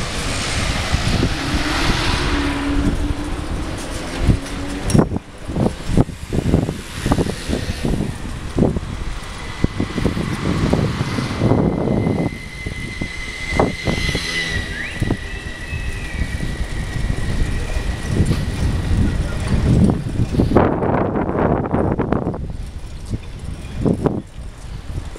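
Wind buffeting the microphone of a camera riding on a moving bicycle, with the rumble and knocks of the ride over the road surface and passing street traffic. A thin steady high whistle sounds for several seconds in the middle.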